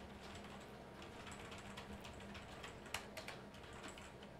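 Faint computer keyboard typing: quick, irregular key clicks, with one louder click about three seconds in.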